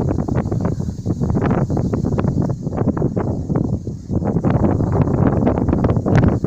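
Strong wind buffeting the microphone in uneven gusts, a loud low rumble over the rustle of tall grass.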